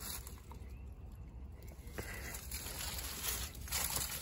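Faint outdoor background noise with a steady low rumble and a single faint click about two seconds in.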